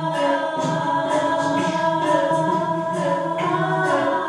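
Layered a cappella vocal loops built up on a live looper, forming a sustained choir-like chord of several overlapping voices over a soft, regular pulse about twice a second.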